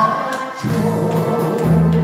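A Korean trot song: a man singing into a microphone over a karaoke backing track, with sustained accompaniment notes.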